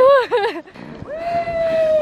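A person's voice: a short burst of quick exclamation, then from about a second in a long cheering call held at one steady pitch that runs into a "Woohoo!".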